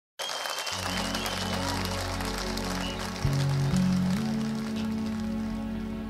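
Opening of a live rock band recording: slow, sustained keyboard chords over held low notes that step up twice, with audience applause and crowd noise underneath that fades away by about five seconds in.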